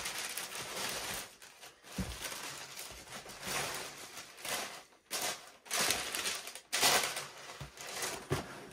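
Tissue paper rustling and crinkling in repeated bursts as sneakers are unwrapped and lifted out of their box, with a low knock of handling about two seconds in.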